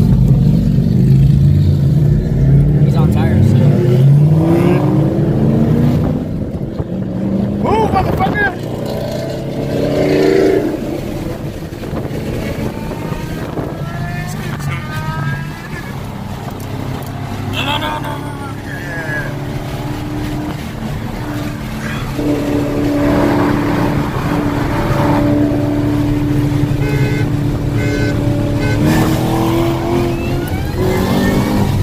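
Supercharged V8 of a 2014 Shelby GT500, heard from inside the cabin, accelerating hard with the revs climbing through several gear changes over the first few seconds. It then settles into a steady drone at cruising speed.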